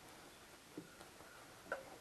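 Faint handling of cloth strips being threaded through a weaving on a box loom, with a couple of soft ticks in the second half.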